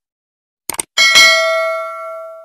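Subscribe-button sound effect: a quick double click, then a notification bell chime struck twice in quick succession, its bright tones ringing on and slowly fading.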